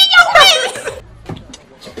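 People's voices: a loud, high, wavering vocal sound in the first second, then quieter, with a short laugh right at the end.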